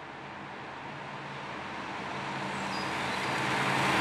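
Audi R8 e-tron electric sports car approaching, a rushing of tyre and road noise that grows steadily louder as it nears, with a faint low hum beneath and no engine note.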